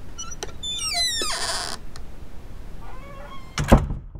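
Intro sound effects over a low rumble: a few clicks, then a cluster of falling whistle-like tones and a short hiss about a second in, and a single loud impact near the end.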